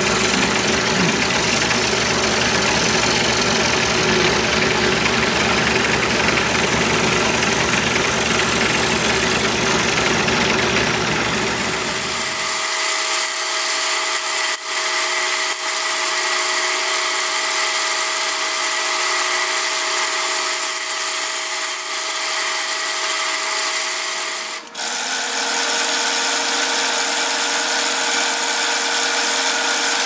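Pegas scroll saw running steadily, its reciprocating number five reverse-tooth blade cutting through a piece of wood. The low hum drops away about twelve seconds in, and after a brief dip about two-thirds of the way through the pitch of the running sound shifts.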